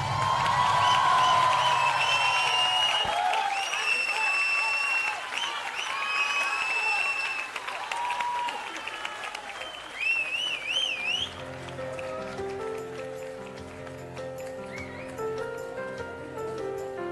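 Audience applause with high-pitched cheers and whoops, dying away over the first ten seconds or so. About eleven seconds in, a quieter electronic music jingle with a ticking beat takes over.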